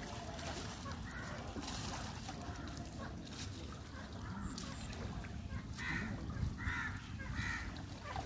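Crows cawing, with three calls in quick succession near the end, over a low steady rumble of wind and water.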